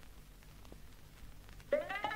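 The start of a 1980s Bengali pop song's intro. A faint low hum gives way, near the end, to a synthesizer tone that slides up in pitch and holds, with a meow-like shape.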